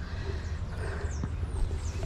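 Footsteps on a dirt trail and a low rumble on a handheld action camera's microphone, with a few short, high, falling bird chirps.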